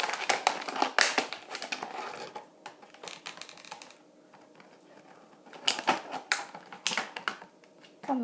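Plastic toy packaging clicking and crinkling as a small figure is worked free of it by hand: a quick run of clicks for the first couple of seconds, a quiet stretch, then a few separate sharp clicks.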